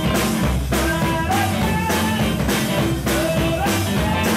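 Live band playing with electric guitar, bass guitar and drum kit to a steady beat.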